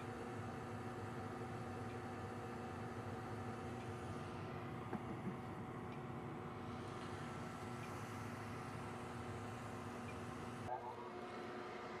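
Concord gas furnace running steadily: a motor hum with several steady tones over an even rush of air, and a slight change in the hum just before the end. The furnace is firing with its combustion readings looking all right.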